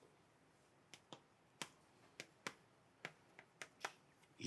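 Chalk tapping against a chalkboard as characters are written: about nine faint, sharp clicks at an uneven pace, starting about a second in.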